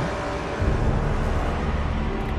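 Car running along a road, a steady low rumble of engine and road noise heard from inside the cabin.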